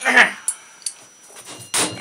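Light metal clicks and clinks as a wheelbarrow wheel's axle hardware is handled and fitted. There is a short noisy burst at the start and a louder one near the end.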